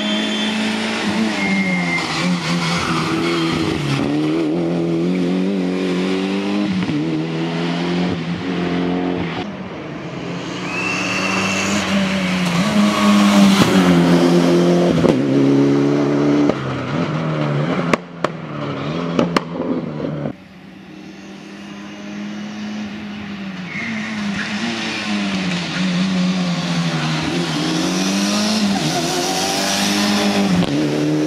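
Mitsubishi Lancer Evolution's turbocharged four-cylinder engine driven hard, its pitch climbing and dropping again and again through gear changes and lifts for the bends. A few sharp cracks come a little past halfway.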